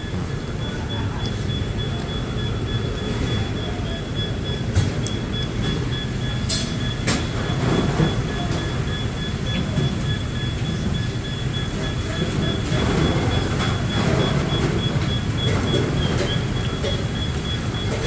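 Steady low rumble of road traffic, with a thin high-pitched whine running through it and two sharp clicks about six and a half and seven seconds in.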